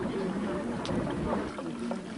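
Faint murmur of background voices over a steady rushing noise.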